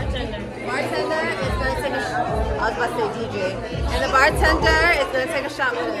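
Several people chattering and talking over each other, with background music and a thumping bass beat.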